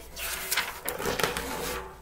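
Sheets of paper rustling and sliding as printed music is pulled off a music stand.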